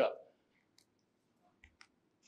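A few faint, separate clicks from a handheld presentation remote being pressed to advance the slides.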